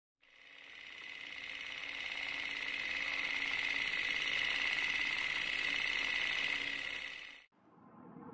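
A steady, rapid mechanical rattle that swells in over the first two seconds, holds, then cuts off sharply about seven and a half seconds in.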